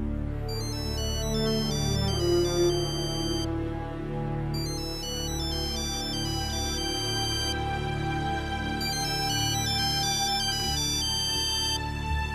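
Mobile phone ringing: an electronic ringtone melody of stepped beeping notes, in phrases with a short break about four seconds in, over a low sustained music score.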